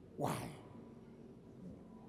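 A man's loud, wailing cry of "Why?" about a quarter-second in. It lasts about half a second, its pitch falling steeply.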